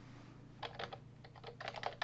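Typing on a computer keyboard: a run of faint, quick key clicks that begins about half a second in.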